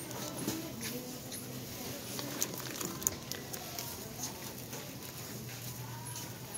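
Wire shopping cart pushed along a store floor, its wheels and basket rattling with irregular small clicks, over a steady low hum and faint voices in the background.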